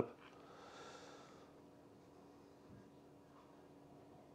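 Near silence: room tone with a faint steady hum, and a soft breath through the nose in the first second and a half.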